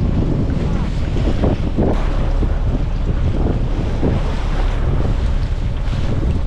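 Strong wind buffeting the microphone in a steady low rumble, over the wash of choppy sea against a boat's hull.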